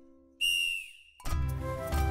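A single blast on a sports whistle, held about half a second, its pitch dipping as it dies away, signalling the group to start the next warm-up movement. Music with a steady, heavy beat comes in about a second later.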